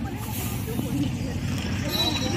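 A bus engine running with a steady low rumble, under people talking.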